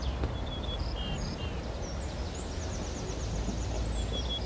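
Small songbirds chirping in short repeated calls, with a fast high trill in the second half, over a steady low rumble of outdoor background noise.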